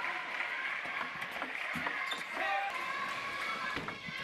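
Table tennis ball clicking off the table and bats in a rally, heard over a steady murmur of crowd voices in an arena.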